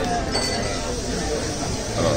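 Restaurant dining-room background: a light clink of tableware about a third of a second in, over indistinct chatter.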